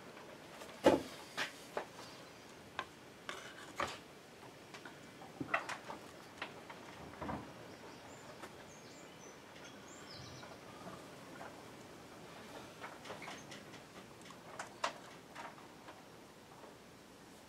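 Scattered light clicks and taps of hands handling and pressing two glued ABS plastic sheath halves together on a plywood board, the sharpest about a second in, over quiet room tone.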